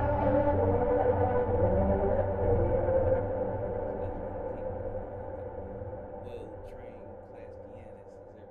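A sustained, droning pad patch from the Output Exhale vocal instrument holds a chord over a deep low hum. About three seconds in, it begins a long, steady fade-out.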